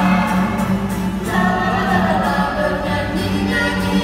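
A small vocal group of a woman and two children singing a hymn in Indonesian, accompanied by an acoustic guitar, with steady low notes under the voices.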